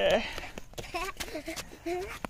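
Faint voices, a few short snatches of speech with some light clicks and knocks, just after a loud pitched call cuts off at the very start.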